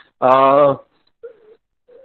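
A man's voice holding a single drawn-out hesitation sound, an 'uhh' at one steady pitch, for about half a second. It is followed by a pause of over a second. The audio is thin video-call sound.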